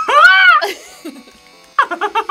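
A person's drawn-out, high exclamation that rises and falls in pitch, then a burst of rapid laughter near the end.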